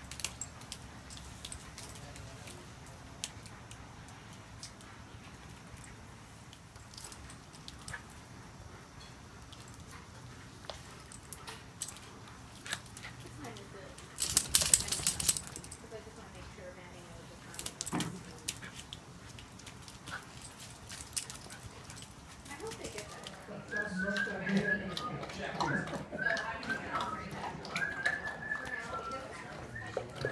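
Two poodles playing on wet concrete: scattered clicks and scuffs throughout, with a loud rustling burst about halfway through. In the last several seconds, pitched, wavering vocal sounds join in.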